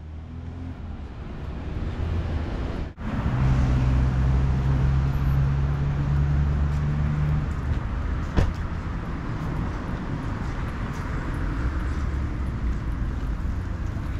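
Street traffic noise: a steady low rumble of road vehicles, with one vehicle's engine humming for about four seconds early on and a single sharp click a little past halfway. The sound drops out briefly about three seconds in.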